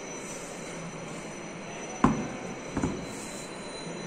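A heavy steel sledge hammer head knocked down onto a hard floor: one sharp clunk about two seconds in and a lighter knock just after, over steady background noise.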